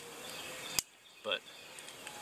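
Faint, steady outdoor background noise, cut by a sharp click less than a second in. The background then drops out almost to silence for about half a second, and one spoken word follows.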